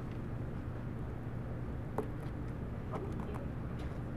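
Quiet room tone: a steady low hum with a few faint, short ticks in the second half.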